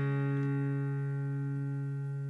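Acoustic guitar chord ringing out and slowly fading after a strum, in an acoustic pop-rock instrumental.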